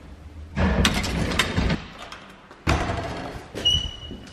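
Door and handling noises as bags of gifts and bouquets are moved: two bursts of rustling and thumping, the second starting with a sudden knock, then a brief high squeak near the end.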